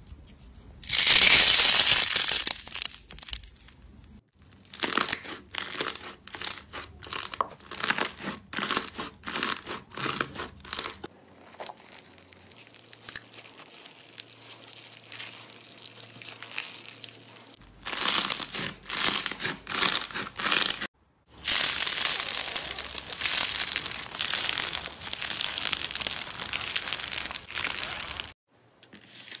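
Hands squeezing, stretching and poking several different slimes in turn, with crackling, crinkling and tearing sounds. A run of short squishes comes about twice a second in the middle, and a long continuous crackle fills the last part, with brief silent gaps between clips.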